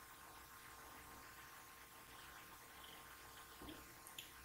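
Near silence: faint steady hiss of the recording with a faint hum.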